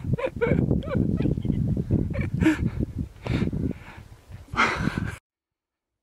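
A man's laughter and excited breathy vocal sounds, cutting off abruptly to silence about five seconds in.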